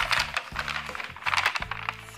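Rustling of a white mold liner being peeled back from a freshly unmolded loaf of soap, in short bunches of noise near the start and again past the middle, over background music with a low, stepping bass line.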